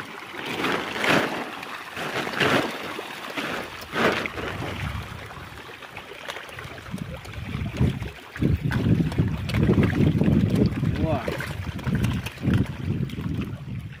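Pangasius catfish splashing and churning at the pond surface as they feed, in repeated bursts. About eight seconds in, louder, deeper splashing and rumbling as a fish is grabbed by hand from the water.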